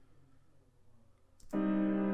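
Near silence for about a second and a half, then a synth pad chord starts suddenly and holds steady, played back through an auto-pan effect set to sweep slowly from left to right at a rate of about one bar.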